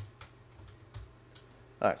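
Computer keyboard keystrokes: about half a dozen separate key presses, spaced unevenly, as an IP address is typed.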